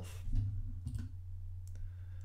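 A few soft clicks, such as a computer mouse makes when advancing a presentation slide, over a steady low electrical hum.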